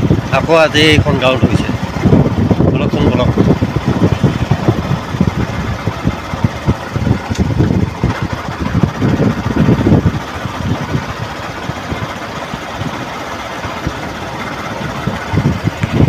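A scooter being ridden on a rough road at about 20 km/h: engine and road noise with an uneven rumble on the microphone, which settles into a steadier, quieter run for the last several seconds.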